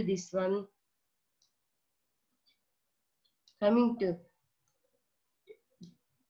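Two brief phrases of a woman's voice separated by silence, then two faint clicks close together near the end: a computer mouse clicking to advance a slide.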